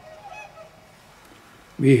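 A few faint, honking swan calls in the first half second. A man's voice starts speaking near the end and is the loudest sound.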